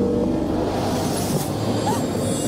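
A steady, even rushing noise with a faint low hum underneath, from the film's soundtrack.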